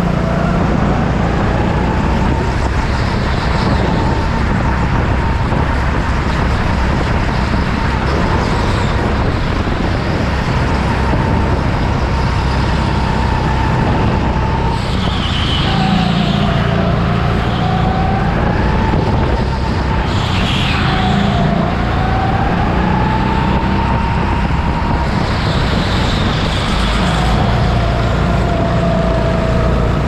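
Go-kart running at speed, heard from the driver's seat: a steady rumble and tyre-on-floor noise with a motor whine that drops in pitch in the corners and climbs again on the straights. Brief high squeals come through in a few of the corners.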